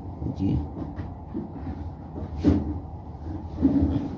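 A man's low, broken speech, with one sharp knock about halfway through.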